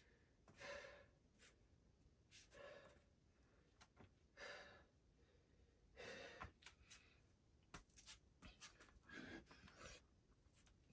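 A man breathing hard and faint, catching his breath after exertion: a soft, heavy breath every second or two, with a few small clicks between.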